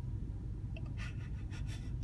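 A man's breathing: a few short, noisy breaths or sniffs starting about a second in, as he holds back tears. Under them runs the low, steady hum of a car cabin.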